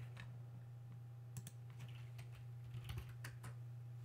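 Faint keystrokes on a computer keyboard, a scattered handful of taps as a short word is typed, over a steady low electrical hum.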